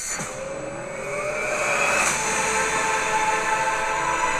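Trailer sound design: a whooshing swell that builds over about two seconds, then settles into a steady, sustained sound with held tones.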